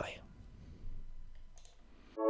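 A man's spoken "bye" ends right at the start, followed by low room tone with a single faint click about one and a half seconds in.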